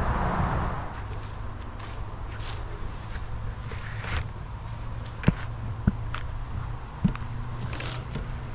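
Plastic bucket and lid being handled, with faint rustling and three sharp knocks in the second half as the lid is set and pressed on. A steady low hum runs underneath.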